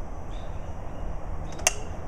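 A single sharp click of a small tossed rock landing, about one and a half seconds in, over a steady low rumble.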